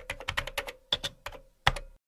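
Computer keyboard typing sound effect: a run of uneven key clicks, with a heavier click near the end.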